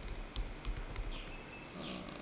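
Computer keyboard typing: a few sharp key clicks in the first second, then only faint background noise.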